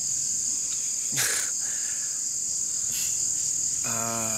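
Crickets chirping in a steady, high, continuous trill, with one brief falling sound about a second in.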